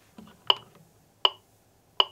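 Electronic metronome clicking steadily, about 80 beats a minute, each click a short high beep.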